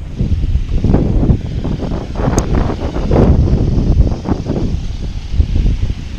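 Wind buffeting the camera microphone in uneven gusts, a loud low rumble, with a short sharp click about two and a half seconds in.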